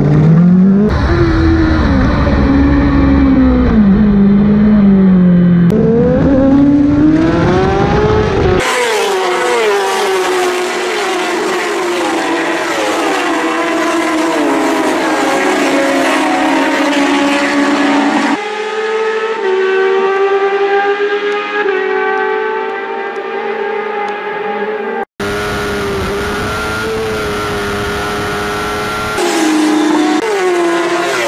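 Racing sport motorcycles at full throttle, engine pitch climbing and dropping with the gear changes. For the first eight seconds or so it is heard up close from on board with wind noise, then several bikes pass by one after another heard from the roadside.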